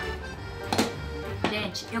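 Background music with a steady melody, with two light clicks about three quarters of a second and a second and a half in.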